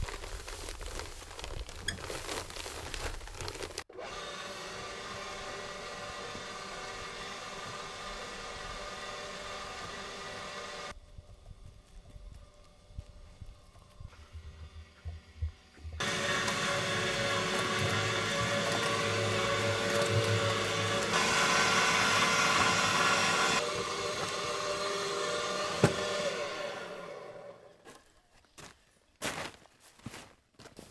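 Small electric cement mixer running, its drum turning as sand and cement are mixed into mortar: a steady motor hum. The hum drops away for a few seconds near the middle, comes back louder and then fades out near the end.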